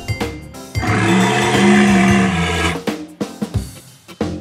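Cartoon Spinosaurus roar: one long, rough roar starting about a second in and lasting about two seconds.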